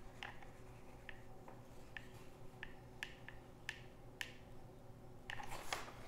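Faint, irregular clicks of a hot glue gun's trigger as a bead of hot glue is run around a foam board part. Near the end comes a short clatter as the glue gun is put down on a wooden board.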